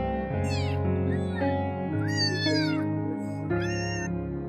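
A young tabby kitten meowing four times in high-pitched calls, the third the longest, over background music.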